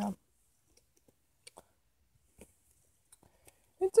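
Faint, scattered small clicks and knocks of handling as the plush toys are moved about, a few of them spread across the quiet stretch. A child's voice is heard briefly at the start and again near the end.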